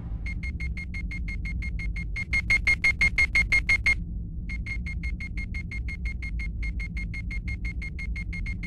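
Rapid electronic beeping, about eight short high beeps a second, over a low rumble. The beeps grow louder about two seconds in, stop briefly about four seconds in, then carry on at a lower level.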